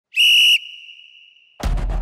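A short whistle blast: one steady high tone about half a second long, trailing off faintly. About a second and a half in comes a sudden deep low boom.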